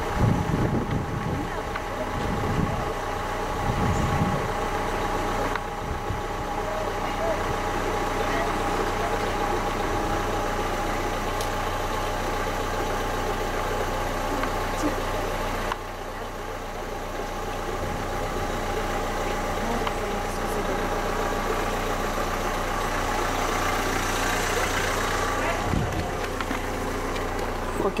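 Car engine idling steadily, a constant hum with a dip in level about sixteen seconds in.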